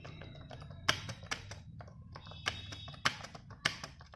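Typing on an iBall Magical Duo 2 wireless keyboard: a quick, irregular run of key clicks, with a few louder strikes standing out.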